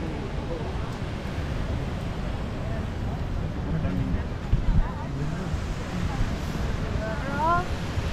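Steady wash of surf on a sandy beach, with wind rumbling on the microphone and faint voices of people in the background.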